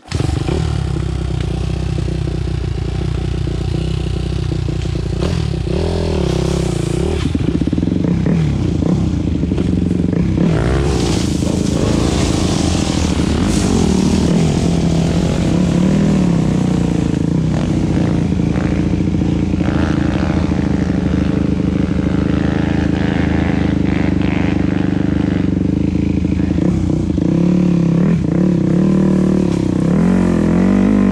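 Dirt bike engine running under the rider, revved up and down as the bike is ridden.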